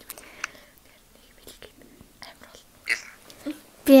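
Faint, breathy whispering and stifled giggling with short pauses in between, then a loud voice breaks in right at the end.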